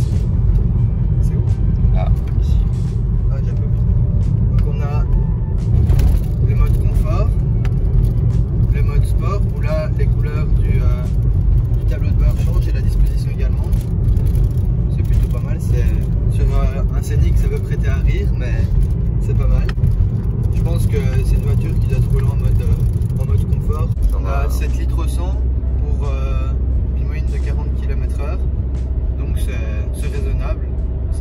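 Cabin road and engine noise of a Renault Scénic (fourth generation, 115 hp petrol, six-speed manual) driving at about 60 km/h, a steady low rumble. About 24 s in the rumble gives way to a steadier, lower hum.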